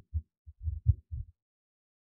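A short run of soft, low thumps, about six of them within the first second or so.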